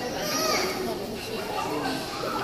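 Indistinct background voices of several people talking, children's voices among them, in a busy public hall.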